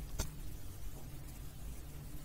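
Quiet background noise of a recording microphone: a steady low hum with hiss, and one faint click shortly after the start.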